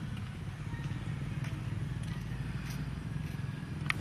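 Quiet outdoor background: a steady low rumble with a few faint clicks.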